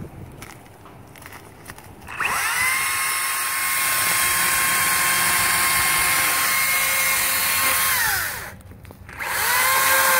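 Makita 36-volt cordless chainsaw's electric motor spinning up about two seconds in and running at a steady high whine for about six seconds while it is worked through low brush, then winding down. A second, shorter run of the motor starts near the end.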